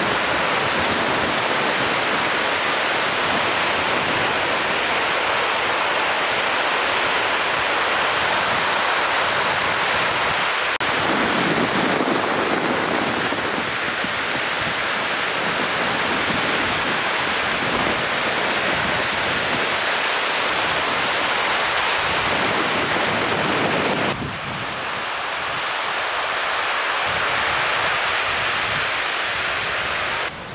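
Breaking ocean surf: a steady rush of white water from waves crashing and washing in. The sound shifts abruptly about 11 and 24 seconds in.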